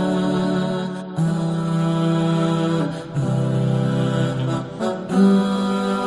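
Background nasheed sung with voices only and no instruments: slow, long-held notes that change pitch every second or two.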